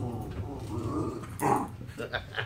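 A dog vocalising: a long drawn-out sound that rises and falls in pitch, then one short, sharp bark about one and a half seconds in.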